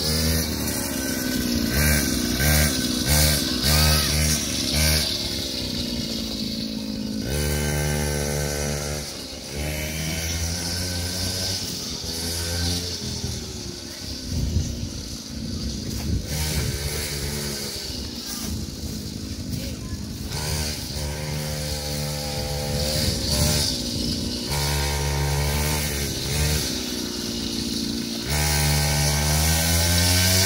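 Small petrol engine of a child's mini quad bike, revved in repeated short bursts so its pitch keeps rising and falling. It grows fainter in the middle as the quad moves farther off, and louder again near the end.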